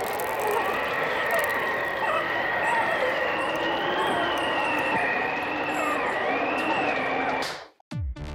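Cartoon sound effect of a cold wind blowing, with a high steady whistle and wavering, gliding tones over a rushing hiss, which cuts off suddenly near the end.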